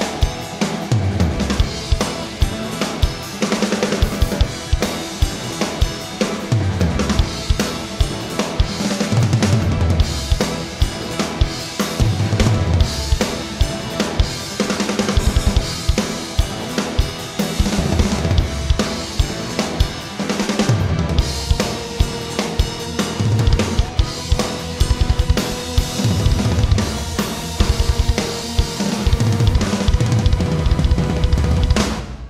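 A full drum kit (Yamaha drums, Zildjian cymbals) played hard and fast through a rock song in a rough mix: constant bass drum, snare and cymbal hits. Sustained pitched instruments run underneath.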